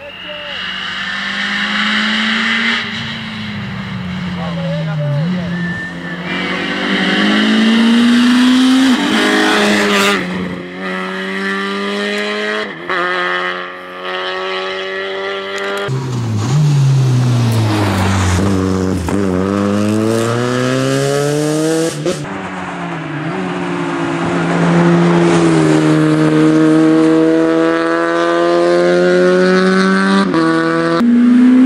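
Citroën Saxo rally car's engine revving hard, its pitch climbing and dropping again and again through gear changes and lifts for corners. It is heard over several passes, with sudden jumps from one to the next.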